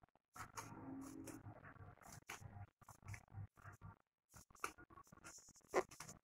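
Scissors snipping folded crepe paper in a series of short, irregular cuts, cutting a zigzag edge, with one louder snip near the end.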